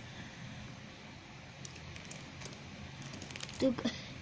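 Faint scattered clicks and light rustling of hard plastic toy soldier figures being handled, with a brief voice sound near the end.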